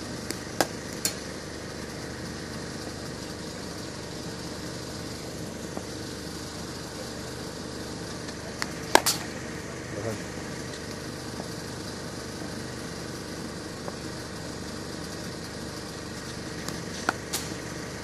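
A few sharp knocks of a hard cricket ball on bat and concrete pitch in a practice net, the loudest about halfway through and another near the end. Under them runs a steady engine-like hum.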